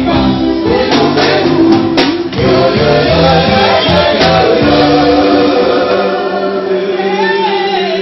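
Live band music with several voices singing together in held notes over a bass line; the sharp percussion strokes stop about two seconds in, leaving the sustained singing.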